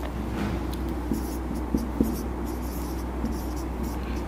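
Marker pen writing on a whiteboard: a run of short scratching strokes, with a few light clicks of the tip against the board.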